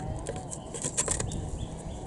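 A few light metal clinks, about a second in, as a loose exhaust-manifold heat shield is lifted off the engine and set aside, over a steady background hiss.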